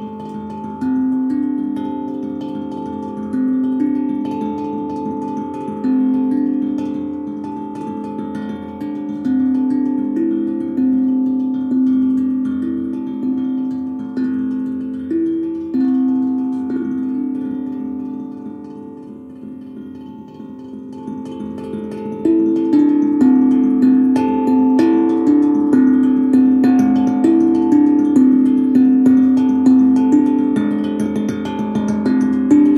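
Steel tongue drum played with mallets: single ringing notes, roughly one a second, each left to sustain and overlap in a slow melody. The playing thins out and grows quieter a little past the middle, then comes back louder and busier about three quarters of the way in.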